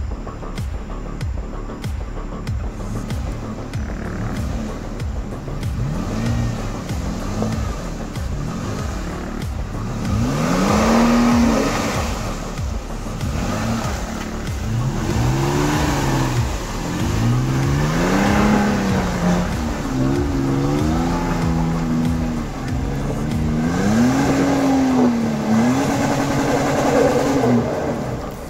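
Toyota FJ Cruiser's V6 engine revving up and down again and again as it claws up a slippery mud slope, its tyres spinning and throwing mud. The revs are lower and steadier at first, then rise and fall in pitch every second or two from about six seconds in.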